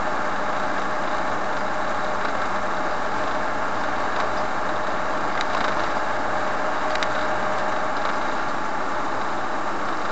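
Steady road noise of a vehicle driving at cruising speed, heard from inside the cabin: engine and tyre noise running evenly, with two faint clicks partway through.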